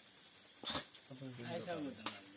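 A lull with a steady faint high hiss, broken by one brief sharp sound a little past a third of the way in, then a person's voice speaking quietly in the second half.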